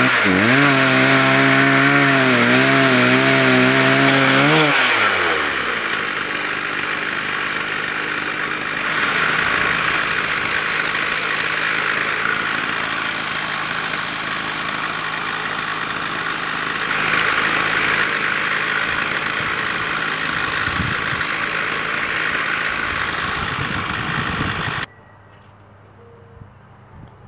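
Two-stroke chainsaw engine powering a homemade cable winch, running hard under load with its pitch wavering up and down, then sliding down after about five seconds. A steadier, noisier running sound follows and cuts off abruptly near the end.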